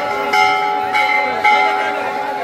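Metal temple bell struck three times in quick succession, each strike ringing on with a steady tone.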